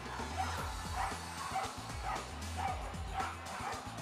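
Dogs barking repeatedly, about two to three short barks a second, while held back by their handlers waiting to start a flyball relay. Background music with a steady bass beat runs underneath.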